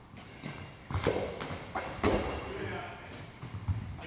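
A goalball, a ball with bells inside, is thrown across a hardwood gym floor. It strikes the floor about a second in and again about two seconds in, its bells jingling as it rolls, and gives a dull thud near the end as a diving defender blocks it.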